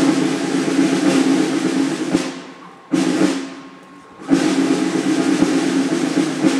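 Military snare drum rolls: a sustained roll of about two seconds, a short sharp burst about three seconds in that fades away, then a second long roll starting a little after four seconds.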